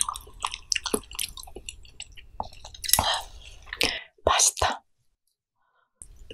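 Close-miked chewing of a mouthful of pollack roe soup: wet smacking and clicking mouth sounds with two louder bursts, about three seconds in and near four and a half seconds, before the sound cuts out to dead silence for the last second.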